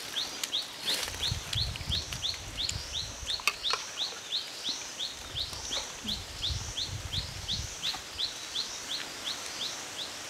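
A bird calling over and over, a short high rising chirp about three times a second, with a low rustling underneath for most of the stretch.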